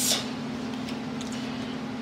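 A steady low hum under quiet room tone, with no distinct clinks or splashes.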